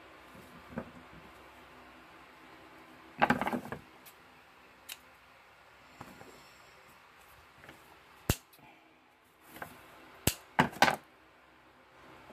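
Scissors snipping thin craft wire, with short clatters as the tool and small pieces are handled on the table. A few single sharp clicks, the loudest clatter about three seconds in and another quick cluster near the end.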